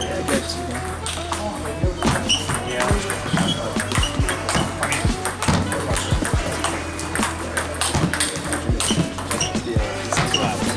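Background music with a steady beat and sung vocals.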